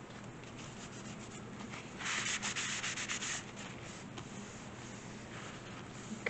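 Paper being rubbed briskly by hand for about a second and a half, starting about two seconds in, as a sheet of scrapbook paper is smoothed down onto cardstock; softer paper handling before and after.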